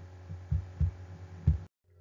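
A steady low hum with three short, dull low thumps, the last the loudest, then a moment of dead silence where the recording cuts out.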